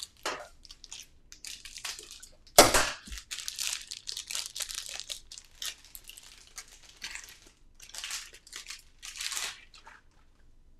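Clear plastic wrapping and plumber's thread-seal tape crinkling and tearing as they are peeled off a small fragrance-oil bottle, in irregular crackles with one louder crackle near the 3-second mark.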